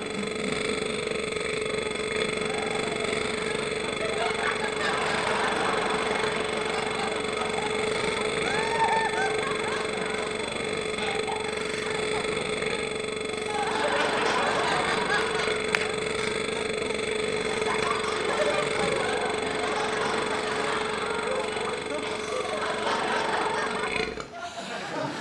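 A woman's very long, drawn-out burp, held at one steady pitch with a crackling, rasping texture, cutting off suddenly at the end.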